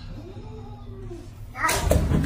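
Cats squabbling: a faint, low, rising-and-falling cat call, then a sudden loud cat cry about one and a half seconds in as one cat pounces on another.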